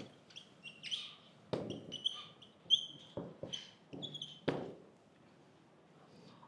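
Dry-erase marker squeaking and tapping on a whiteboard as words and a formula are written: a string of short high squeaks with a few sharp taps, stopping about a second before the end.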